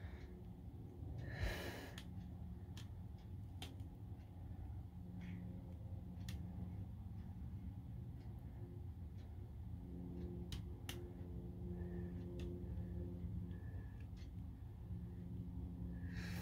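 Quiet room tone: a low steady hum, a few faint scattered clicks, and a short breathy sound about a second and a half in.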